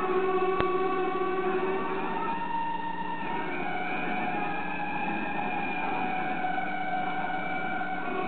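Background music of several sustained tones held together, slowly shifting in pitch, with a single sharp click about half a second in.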